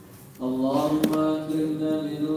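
Male chanting of an Islamic devotional recitation in long, held notes. It pauses at the start and resumes about half a second in.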